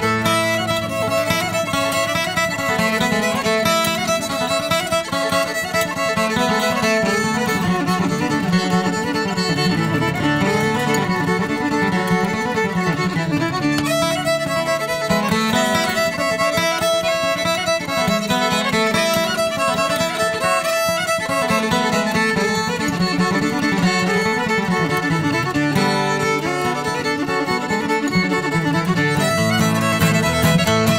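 A fast instrumental bluegrass fiddle tune, a barn burner, on bowed fiddle with an acoustic guitar keeping rhythm underneath, played at a steady level throughout.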